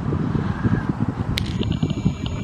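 Wind buffeting and handling noise on a handheld camera's microphone: a low, irregular rumble, with one sharp click about a second and a half in.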